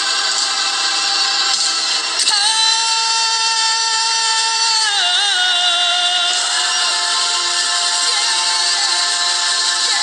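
Gospel worship music with singing in long held notes. One note is held from about two seconds in and slides down about halfway through.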